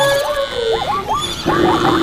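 A jumble of overlapping animal calls from a running herd, with horse whinnies among them.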